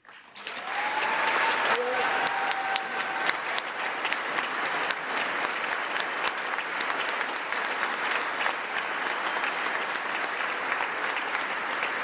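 A large audience in a big hall breaks into a sustained standing ovation: dense, even clapping that starts abruptly and holds steady, with a drawn-out cheer over it in the first few seconds.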